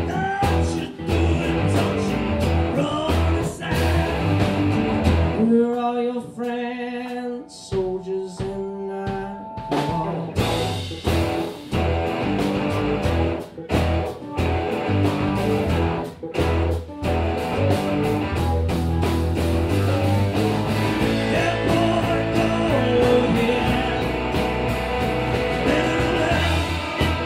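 Live rock band playing, with acoustic and electric guitars over drums and bass. About six seconds in the drums drop out and held chords ring on their own for a few seconds, then the full band comes back in.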